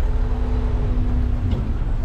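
Car engine and road rumble, low and steady with a constant hum, as the car drives off the car ferry onto the slipway.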